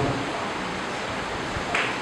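Steady hiss of room tone picked up by a handheld microphone during a pause in speech, with a brief soft hiss near the end.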